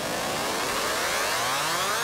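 A smooth sweep of many overtones rising slowly and steadily in pitch, a riser effect used as a transition between music tracks.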